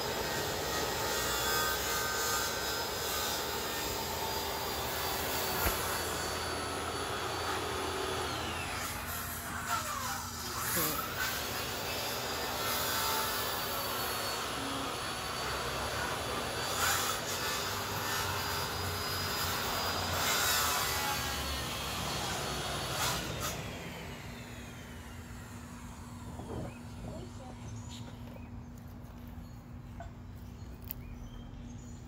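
A steady mechanical drone with faint, held whining tones, from an engine or motor running in the background. It eases off about three-quarters of the way through.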